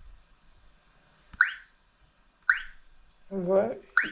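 Two short electronic blips from a GPS navigator's touchscreen as it is tapped, about a second apart, each a click with a brief rising tone.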